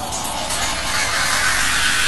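Synthesized hissing noise sweep, a filtered-noise riser in electronic intro music, climbing slowly in pitch.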